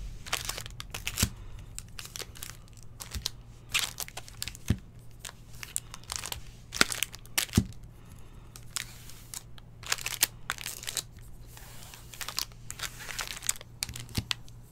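Foil wrappers of Topps Series 2 baseball jumbo packs crinkling in irregular spurts as they are handled and numbered with a felt-tip marker, with three light knocks on the table.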